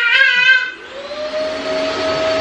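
A high-pitched voice-like squeal for the first half-second or so, then a steady whirring like a small electric motor or fan, carrying one steady hum tone, which cuts off suddenly.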